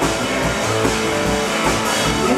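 Rock music with guitar and drum kit playing under a stage musical dance number.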